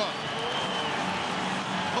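Steady crowd din in an ice hockey arena, a dense murmur of many spectators with no single voice standing out.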